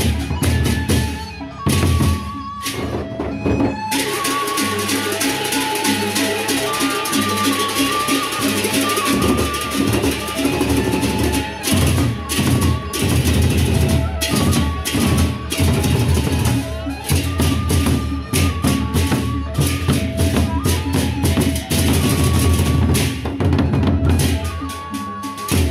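Lombok gendang beleq ensemble playing: large double-headed barrel drums beaten fast with sticks and pairs of hand cymbals (ceng-ceng) clashing in dense interlocking rhythm over a heavy low beat, with a repeating high pitched note pattern on top.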